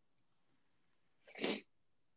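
Near silence, broken about one and a half seconds in by one short, breathy vocal burst from a participant on the video call.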